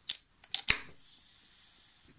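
An aluminium drink can being cracked open: a few metallic clicks and a sharp crack of the tab just under a second in, then a faint fizz that fades away.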